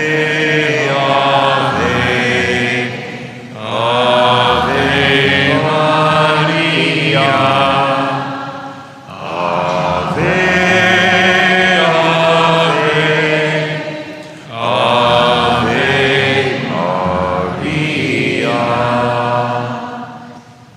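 A slow, chant-like sung refrain in four long phrases of about five seconds each, with held notes and a short breath between phrases.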